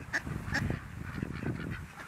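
Canada geese honking in a string of short, scattered calls.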